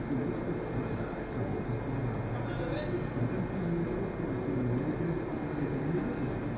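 Indistinct voices talking over a steady low hum in a large indoor tennis hall, with no ball strikes.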